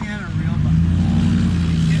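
A motor engine starts droning loudly about half a second in and holds a steady pitch.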